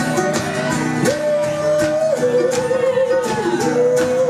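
Live folk-rock band: a strummed acoustic guitar with a voice over it holding long notes, each a little lower than the last.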